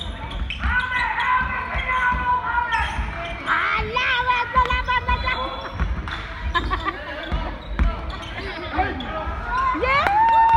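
Basketball bouncing on a gym floor during play, with players' shouts and calls echoing around the hall.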